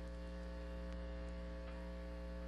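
Steady electrical hum: a low drone with a ladder of evenly spaced higher tones above it, holding at one level.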